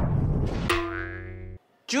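Edited-in sound effects: a noisy rumble fades out, and about two-thirds of a second in gives way to a single steady pitched tone held for about a second that cuts off suddenly.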